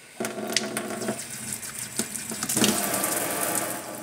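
A pull-down kitchen faucet is turned on and sprays water into a stainless steel sink. The flow starts about a quarter second in and becomes louder and hissier about two and a half seconds in.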